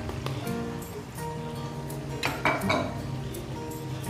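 Background music with held notes, and a brief cluster of metal clinks about two and a half seconds in, typical of a spoon or spatula knocking against a metal kadai.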